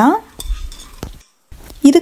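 Roasted peanuts pouring from a steel pan into a stainless-steel mixer jar, rattling and clicking against the metal. The rattle cuts off abruptly just after a second in.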